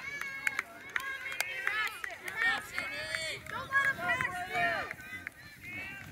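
High-pitched children's voices calling and chattering, with no clear words.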